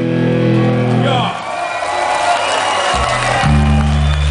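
Live rock band with electric guitars and bass playing loud held chords: one chord rings and stops about a second in, a quieter stretch follows, and another chord is struck shortly before the end.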